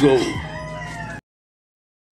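A rooster crowing behind a shouted word, cut off abruptly about a second in by an edit, then silence.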